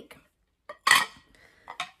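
Side plates clinking as they are handled and set down: one sharp clink with a brief ring about a second in, with lighter knocks just before it and near the end.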